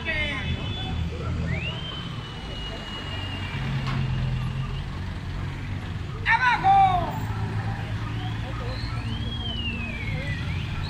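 Steady street traffic rumble with a loud shouted voice about six seconds in. Thin high glides sound twice, one rising and holding for a few seconds, one rising and falling near the end.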